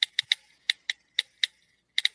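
Phone keypad taps as a text message is typed: about eight short, high clicks at uneven intervals.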